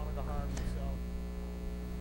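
A steady low electrical hum, with faint voices briefly near the start.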